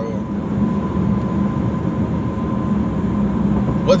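Steady low rumble of road and engine noise inside a moving car's cabin, with a faint steady whine over it.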